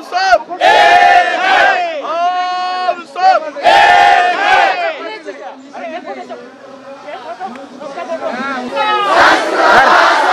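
A crowd of men chanting protest slogans in unison, each call long and held. Several loud calls fill the first half, the voices drop to a lower murmur in the middle, and the shouting rises again near the end.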